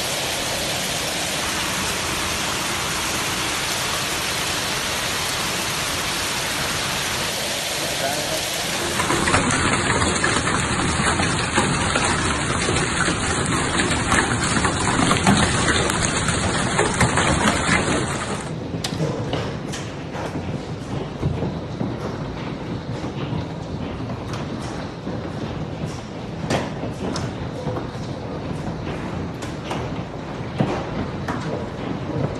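Hail coming down hard, a dense steady roar of hailstones pelting the ground. About nine seconds in it grows louder. From about eighteen seconds it thins to a lighter hiss with many separate sharp ticks of hailstones striking hard ground and splashing into water.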